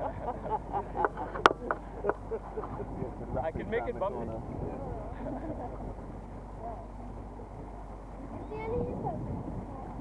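Small boat's motor running steadily while under way on the river, with voices talking over it and one sharp click about one and a half seconds in.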